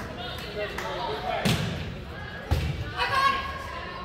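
A volleyball struck or bounced twice, two sharp thumps about a second apart on a gym's hardwood court, with spectators' voices and a burst of shouting after them.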